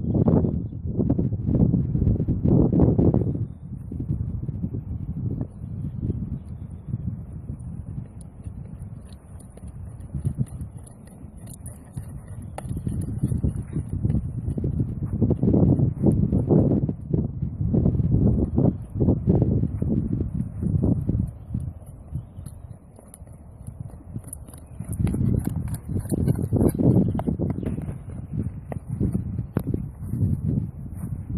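Wind buffeting the microphone in gusts, with the muffled hoofbeats of a ridden horse on a soft arena surface.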